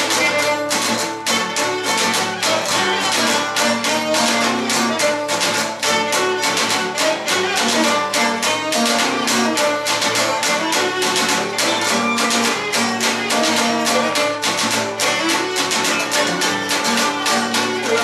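Instrumental passage of a Cretan siganos: a Cretan lyra bows the melody over a laouto strumming a steady rhythm.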